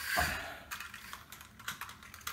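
Light, irregular plastic clicks and taps from a battery-powered plastic toy coaster train set and its snap-together plastic track.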